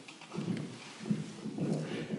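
Footsteps on a hard floor: a run of irregular, dull steps as someone walks across the room.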